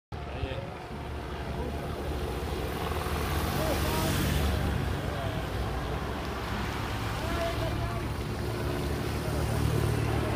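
Race-convoy motorcycles and a car passing along the road, their engine and tyre noise swelling about four seconds in, with spectators' voices along the roadside.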